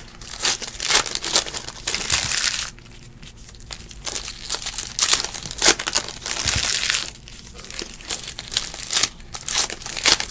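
Foil trading-card pack wrappers crinkling as packs are ripped open and handled by hand, in irregular bursts with short pauses between them.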